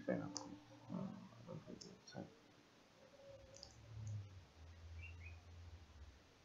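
A few faint computer mouse clicks over a low steady hum.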